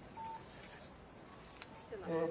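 A single short electronic beep, a steady mid-high tone about a quarter second long near the start, over faint outdoor background noise, with a faint click later on.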